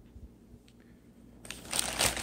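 Plastic poly mailer bag crinkling and rustling as a hand grabs and handles it, starting about one and a half seconds in after a nearly quiet start.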